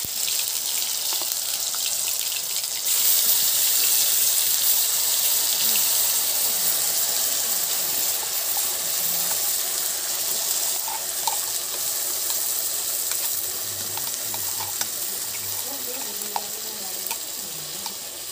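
Spice paste sizzling in hot oil in an iron kadai. The frying hiss jumps louder about three seconds in as more paste hits the oil, then slowly eases, with a few light spoon clinks.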